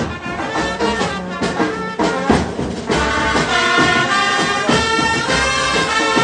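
Music led by a trumpet playing over a drum beat, with longer held notes in the second half.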